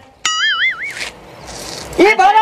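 Edited-in cartoon sound effect: a click, then a wobbling, twangy tone for about two-thirds of a second, followed by a hiss that swells like a whoosh near the end.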